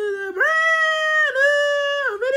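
A person's high-pitched voice holding a long wordless note. It steps up in pitch just under half a second in, dips briefly about a second later, then holds again.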